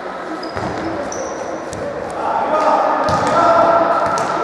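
Indoor futsal play in an echoing sports hall: a few sharp thumps of the ball being kicked and hitting the hard floor, brief squeaks of sneakers on the court, and indistinct shouting from players and onlookers, growing louder about two seconds in.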